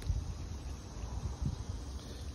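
Outdoor background noise with no clear single source: an uneven low rumble on the phone's microphone.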